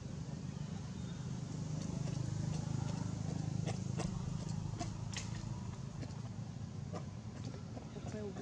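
A low motor rumble that swells about two seconds in and eases off again, with a few sharp clicks in the middle and near the end.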